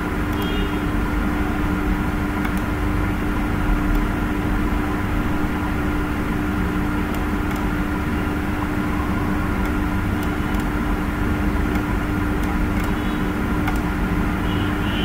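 Steady background hum and noise with a constant low tone, and a few faint clicks.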